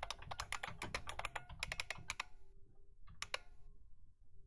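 Computer keyboard being typed on in a quick run of keystrokes for about two seconds, then a pause and two more clicks near the end.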